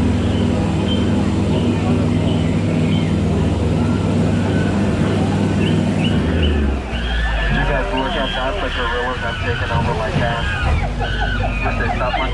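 Tour boat's motor running with a steady low hum under way, easing off about seven seconds in. Wavering high calls and chatter then take over as the boat nears the baboon scene.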